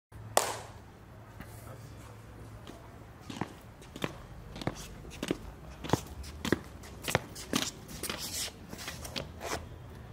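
Footsteps on a hard floor from shoes fitted with strap-on roller skates, a step about every 0.6 seconds through the second half, after one sharp knock near the start.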